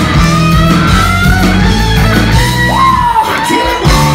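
Live rock band playing, with electric guitar and drums. Near the end the bass and drums drop out for about half a second, then the full band comes back in.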